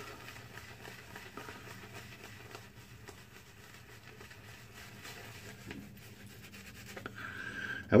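Shaving brush scrubbing wet soap lather into a bearded face: a soft, steady bristly scratching.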